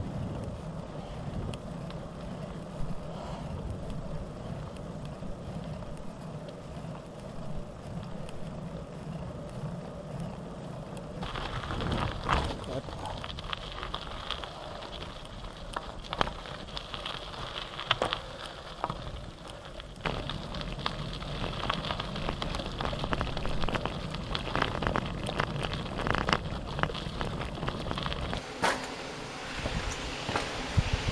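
Gravel bike riding, heard from a handlebar-mounted camera: a low rumble of tyres and wind on paved road, then from about eleven seconds in the crunch and crackle of tyres on a rough dirt track, with frequent knocks and rattles from the bumps.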